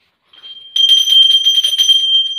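Small hand bell (puja ghanti) rung rapidly, about ten strokes a second, giving one clear high ringing tone. It starts faintly a third of a second in and rings fully from under a second in.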